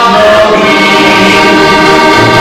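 A heligonka, a diatonic button accordion, playing sustained chords and melody notes, with a man singing along.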